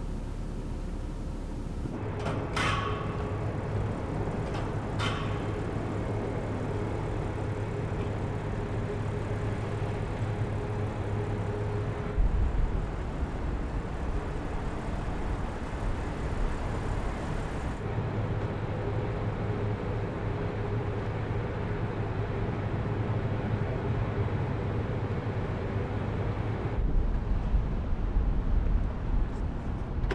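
Audi car running slowly with a steady low hum and a faint tone above it. Two sharp clicks with a ringing tail come about two and a half and five seconds in, and the background changes abruptly several times.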